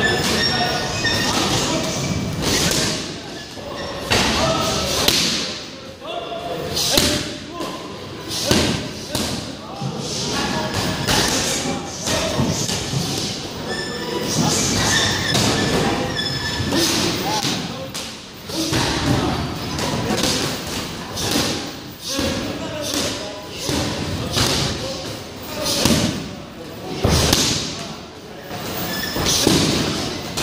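Gloved punches and strikes landing on Muay Thai pads in pad work: a long run of sharp thuds in combinations, broken by short pauses, with voices between them.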